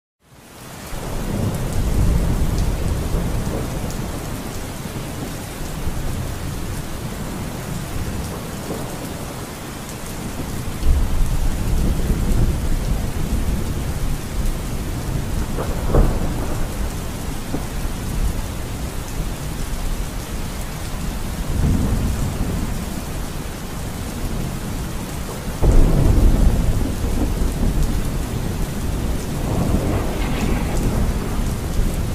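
Steady rain with rolls of thunder that swell several times, the loudest rumbles starting about 11 s and 26 s in, and a sharper crack near the middle.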